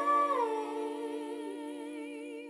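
Female a cappella voice holding one long note. The note slides down slightly about a third of a second in, then sustains with a gentle vibrato while slowly fading.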